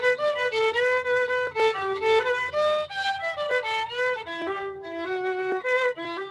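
Solo violin playing a bowed melody, the notes moving several times a second, heard through a video-call connection.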